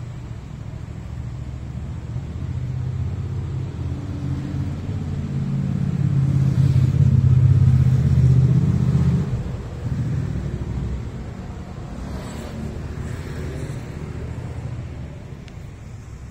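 A motor vehicle's engine rumble, building over several seconds to its loudest around eight seconds in, then dropping off suddenly just after nine seconds and carrying on lower.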